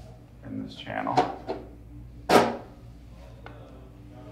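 Hard plastic knocks and clatter as an aquarium LED light bar is set onto and fitted into a plastic tank lid. The loudest is a sharp clack a little over two seconds in.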